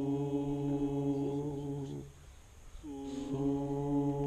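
Group of men chanting a Buddhist puja prayer on one long held note, breaking off for a breath about two seconds in and taking up the same note again shortly before the end.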